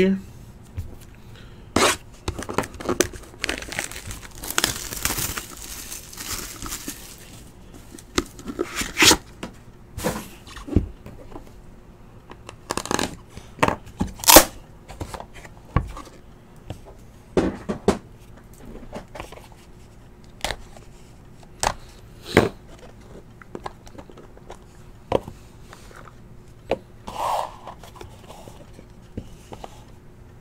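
Plastic shrink-wrap being torn and crinkled off a sealed trading-card box, with a stretch of tearing and crinkling a few seconds in. Scattered sharp clicks and taps follow as the cardboard box and its inner case are opened and handled.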